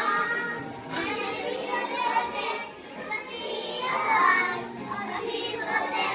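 A small group of preschool-age children singing a song together.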